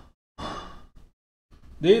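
A man's sigh: one breathy exhale of about half a second, then he starts speaking again near the end.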